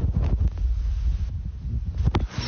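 Wind buffeting a phone's microphone: an uneven low rumble.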